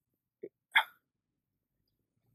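Two brief sounds from a man's mouth or throat in a pause between phrases: a faint one, then a louder one about a third of a second later.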